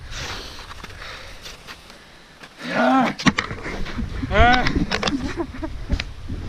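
A man's wordless shouts or whoops: a rising-and-falling call about three seconds in and a louder drawn-out one about four and a half seconds in, with shorter calls after. Before them there is only a faint rush of wind and movement.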